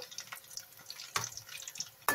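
Stuffed small brinjals frying in oil in a steel pot, a soft steady hiss, with one sharp clink about a second in.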